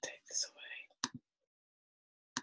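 A woman's voice speaking softly, with a breathy, whispery quality, for about the first second, followed by two short, sharp clicks and then silence.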